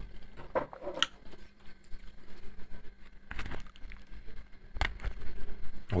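Quiet eating sounds: chewing, with scattered light clicks and scrapes of a knife and fork against a disposable lasagna tray.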